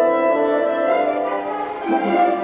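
Youth symphony orchestra playing classical music, bowed strings holding sustained chords, with a brief dip in loudness near the end before the next phrase enters.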